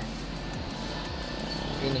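Steady low rumble of a car's cabin, with background music playing over it.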